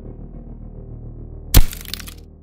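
Glass-cracking sound effect of a helmet visor shattering: one loud, sudden crack about a second and a half in, with a brief crackle after it, over a low, steady music drone.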